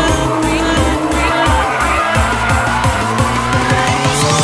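Nissan Silvia S15 drifting: its engine revs rise and fall and its tyres squeal as it slides. Electronic background music with a steady beat plays over it.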